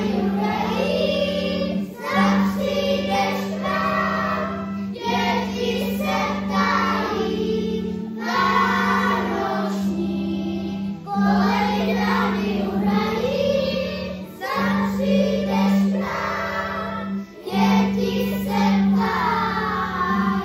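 A choir of young children singing a Christmas song together in phrases of a few seconds each, over sustained low accompaniment notes.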